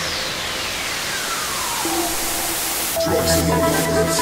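Progressive psytrance track at a break: the kick and bassline drop out while a hissing noise sweep builds and a whistling tone slides steadily down in pitch. About three seconds in, the kick and bass come back in under a steady held synth note.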